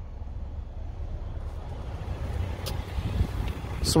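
Wind buffeting the microphone: a low, uneven rumble, with a faint click about two-thirds of the way in.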